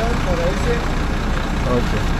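Steady low rumble of a large vehicle's engine idling close by, with voices talking faintly over it.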